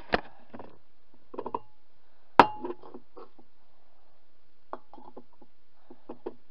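Glass bottles clinking and knocking as they are handled: a few light knocks, one sharp clink with a short ring about two and a half seconds in, then more light knocks near the end.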